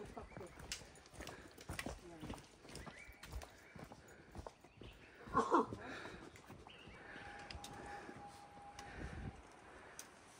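Footsteps on a rocky mountain trail: irregular knocks of boots on stone and earth. A brief, louder voice sound comes about five seconds in, and a thin, steady tone lasts about two seconds near the end.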